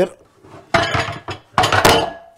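Kitchenware clattering as pots and dishes are handled: a short clatter about a second in, then a louder one near the end with a brief metallic ring.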